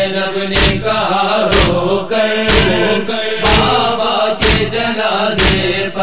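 Rhythmic matam, chest-beating by mourners, with one sharp stroke about every second, under a chorus of men's voices chanting a held lament between verses of a noha.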